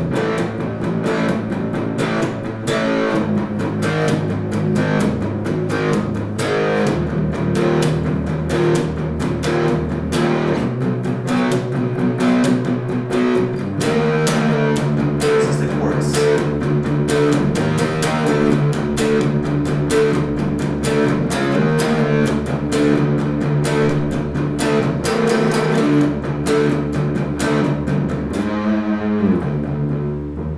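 Electric guitar, a Gibson SG, playing a heavy doom-metal riff that breaks into a pre-chorus: a steady run of picked notes and chords, changing pattern about halfway through.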